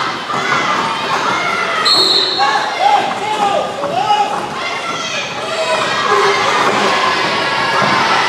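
Roller derby pack play in a large gym hall: roller skate wheels rolling and knocking on the wooden floor, with players' shouts and crowd voices echoing. A brief high whistle-like tone sounds about two seconds in.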